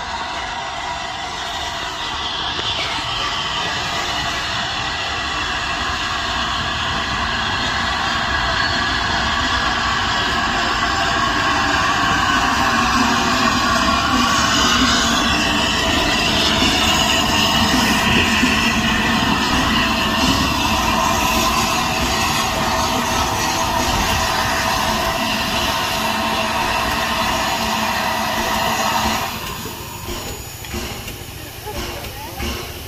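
LNER A3 Pacific steam locomotive 60103 Flying Scotsman running slowly into the station and drawing up alongside the platform. A steady sound made of several ringing tones builds through the first half and then stops abruptly about a second before the end, as the locomotive slows to a near stand.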